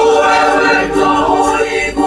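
Mixed choir of women's and men's voices singing unaccompanied in harmony, holding sustained chords, with a short break in the sound just before the end.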